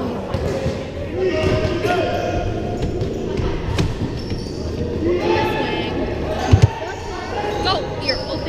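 Basketball game play in a large gymnasium: a ball bouncing on the hardwood, with voices calling out around the court. A short heavy thump about six and a half seconds in is the loudest sound.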